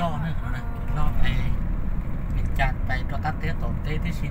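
Steady low rumble of a car's engine and tyres heard from inside the cabin while driving, with people talking over it at the start and again later.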